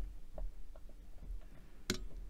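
Faint soft ticks of small pieces of polymer clay being separated by fingers on a glass work mat, with one sharp click near the end.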